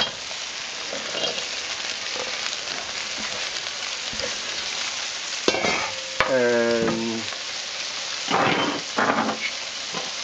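Food sizzling in hot oil in a wok and being stirred with a wooden spatula: a steady sizzle throughout, with a couple of sharp clicks a little past halfway and a louder surge of sizzling near the end.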